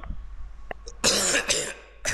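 A man coughs about a second in: a short, loud cough in two quick bursts.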